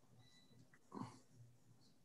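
Near silence on a video-call line: faint room tone, with one short faint noise about a second in.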